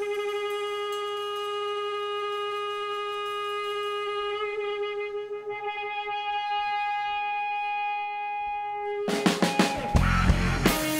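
A live rock band: an electric guitar holds one long sustained note for about nine seconds, then the drums and the rest of the band come in loudly near the end.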